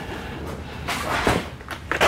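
Rustling and shuffling noise with a few light knocks about halfway through and near the end.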